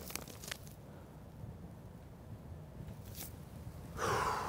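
Quiet low background rumble with a few faint rustles and short clicks of face masks and clothing being handled.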